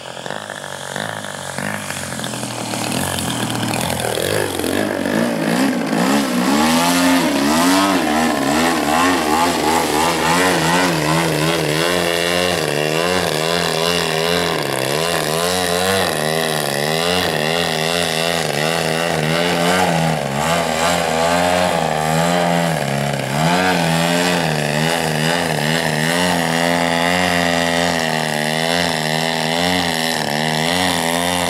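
DLE 111 twin-cylinder two-stroke gas engine of a one-third-scale clipped-wing Cub RC plane, growing louder as the plane comes close, with its pitch dropping sharply a few seconds in. It then runs with the throttle constantly rising and falling while the plane hangs nose-up in a hover.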